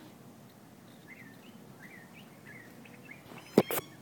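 Faint, short bird chirps over a quiet outdoor background, then a single sharp knock followed by a couple of lighter clicks near the end.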